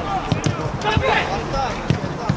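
A football being kicked and thudding off boots, several dull thuds within two seconds, the loudest near the end, with players shouting to each other.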